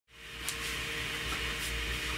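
A fan running in a workshop: a steady, even airy noise with a low hum and a faint steady tone underneath. A small click sounds about half a second in.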